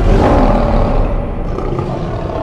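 Lion roar sound effect in a logo sting: one long roar that starts loud and gradually fades.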